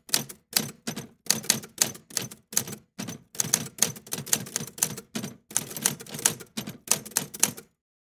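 Typewriter keystroke sound effect: a run of sharp key clacks, roughly three a second and unevenly spaced, stopping shortly before the end.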